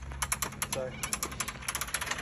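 Caravan roll-out awning being pulled out by hand, its roller giving a rapid run of ratchet-like clicks, about ten a second.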